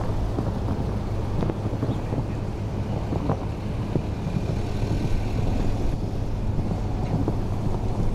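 Steady low rumble of wind buffeting the microphone, with scattered soft thuds of a horse's hooves cantering on sand.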